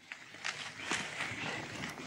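Dry maize stalks and leaves rustling and crackling as a beater and his dog push through a game-cover crop, with a scatter of brief irregular crackles.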